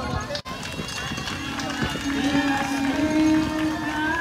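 Cheering voices for the passing marathon runners, broken off by an abrupt cut about half a second in; then a group's song with long held notes, over the patter of many runners' footsteps.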